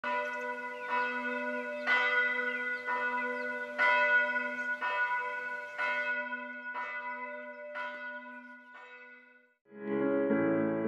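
A church bell ringing, struck about once a second, each stroke ringing on over a steady hum, fading out near the end.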